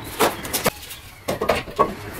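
Cardboard cover and its tape being pulled off an intercooler core: a string of short, uneven tearing and crinkling noises.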